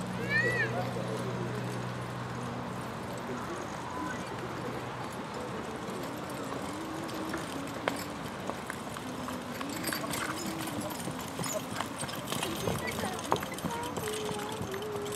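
Pair of carriage horses trotting on a dirt arena, their hooves clip-clopping, with more distinct hoofbeats in the second half. Voices talk in the background, and a short rising-and-falling chirp sounds just after the start.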